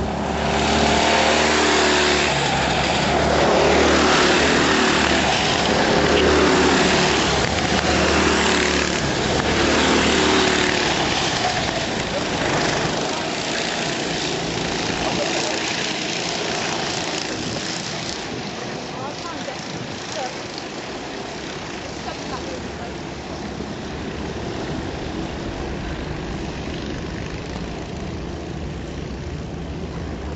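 Racing kart engines at full throttle, loud and rising and falling in pitch as karts pass close by over the first ten seconds or so, then fading to a more distant, steadier drone as they run round the far side of the track.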